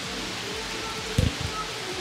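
Heavy rain falling steadily on a paved street, an even hiss, with one dull low thump a little over a second in.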